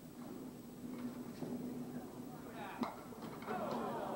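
Candlepin bowling ball rolling down the lane with a steady low rumble, then striking the pins with one sharp, hollow crack a little under three seconds in, followed by a few lighter knocks of falling pins. The hollow hit is the kind that leaves a pin spinning and still standing.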